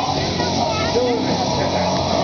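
Fairground din around a running Orbiter ride: steady machine noise with a jumble of distant voices and crowd calls.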